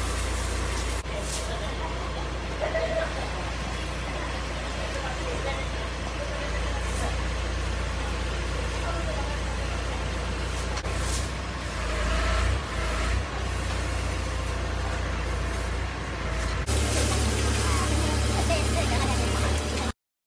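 Truck engine running steadily while its truck-mounted hydraulic grab crane handles scrap metal, a low drone throughout. Near the end the drone changes abruptly to a steadier, slightly different hum.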